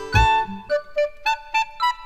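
Short musical jingle: a quick run of pitched notes over a few low beats that fade out about halfway through.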